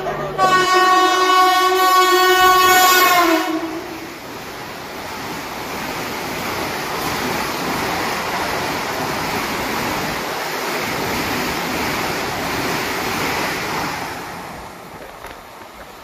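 Train horn sounding loudly for about three seconds as an express train runs through the station at speed, followed by the steady rush and rumble of its coaches passing, fading away near the end.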